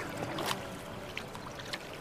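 Water lapping and splashing, with a few short splashes, the clearest about half a second in.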